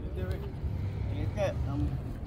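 Indistinct voices of people talking nearby, twice in short snatches, over a steady low rumble.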